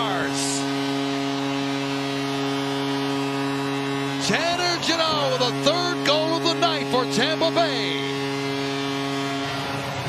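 Arena goal horn sounding one long, steady, multi-toned blast after a home goal, over a cheering crowd. Whoops and shouts rise above it from about four seconds in.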